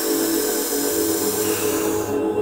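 Ambient meditation music with a steady low drone, under a long airy hiss that fades out near the end.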